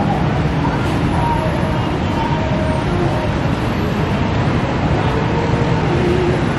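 Steady city traffic noise rising from the streets below, with a few short, faint horn-like tones over the constant rush.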